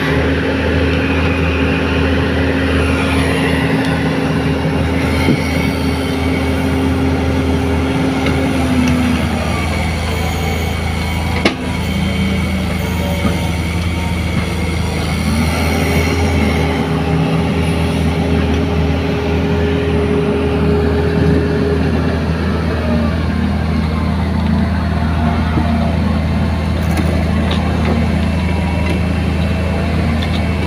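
Diesel engines of a Hitachi Zaxis 48U mini excavator and a bogged single-drum road roller running hard together while the excavator tries to pull the roller out of the mud by rope. Engine speed drops around nine seconds in and rises again around sixteen seconds, with a single sharp knock in between.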